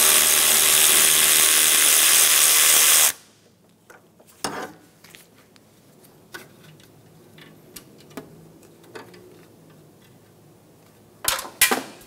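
Power ratchet with a 10 mm socket spinning out the condenser line bolt, a loud steady whirr for about three seconds that cuts off suddenly. Faint clicks of the socket and bolt being handled follow, with a couple of sharp knocks near the end.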